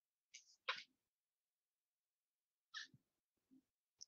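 Near silence broken by two short, hissy breath sounds from a person close to the microphone, the first about half a second in and the second, fainter, about three seconds in.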